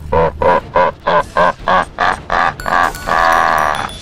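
The Predator's laugh: a rapid run of 'ha-ha-ha' bursts, about three a second, ending in one long drawn-out cry near the end.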